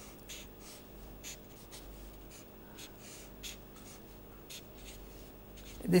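Marker pen drawing on paper: a quick series of short, faint scratchy strokes as lines of a circuit diagram are drawn.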